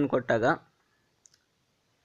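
A single faint computer mouse click, short and sharp, a little over a second in, with a weaker tick just after.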